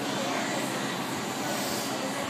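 Steady background noise without any distinct knock or thud.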